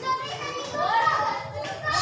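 Children's voices chattering in the background.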